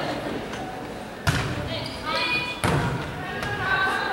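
A volleyball struck twice in an echoing gym, about a second and a half apart, with players' voices around the hits. The timing fits a serve followed by the receiving team's pass.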